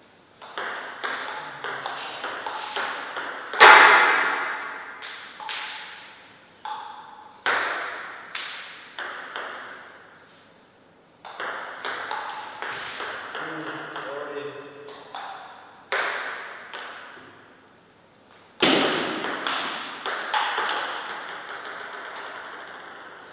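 Table tennis ball clicking off paddles and the table in several rallies of quick, sharp ticks, with short pauses between points. A couple of louder bangs stand out, about four seconds in and near the end.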